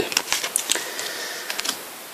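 Stiff football trading cards being handled: a quick run of small clicks and flicks as the cards are shuffled and moved, then a few fainter taps.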